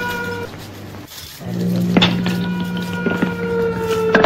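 Background music of long held notes at several pitches, with a few sharp percussive hits; it drops out briefly about a second in and then comes back.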